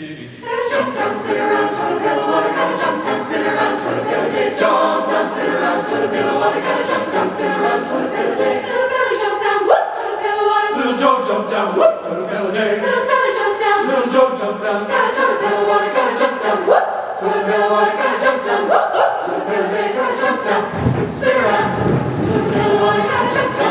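Mixed choir of teenage voices singing together, entering about half a second in.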